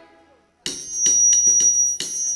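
Live worship band music breaks off briefly, then about two-thirds of a second in a run of quick percussion strikes starts, about four or five a second, over a steady high ringing note.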